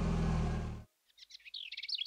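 A cartoon truck's engine rumble as it drives past, cut off abruptly about a second in. A moment later a bird starts twittering in quick, repeated chirps.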